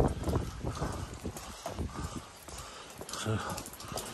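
Footsteps going down wet stone steps, a string of hard, uneven knocks, with rain falling around them.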